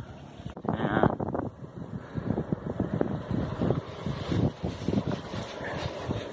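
Wind buffeting the microphone and road noise from a bicycle rolling along asphalt, uneven and gusty. A short higher-pitched squeal comes about a second in.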